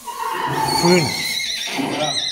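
A horse whinnying: one long call, nearly two seconds, with a wavering tremble in its pitch.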